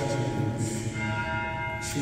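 Church bells ringing, struck about twice, each strike's tones ringing on and overlapping with the last.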